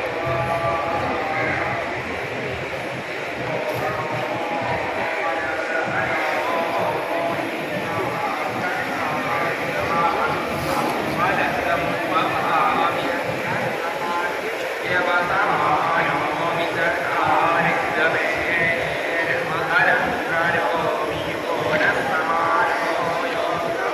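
Many people's voices overlapping, a crowd talking or chanting at once, with music faintly under it.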